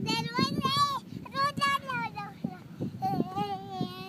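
A toddler's high-pitched sing-song squealing and laughing: a quick run of wavering calls in the first second, a short burst about a second and a half in, and one long held note near the end.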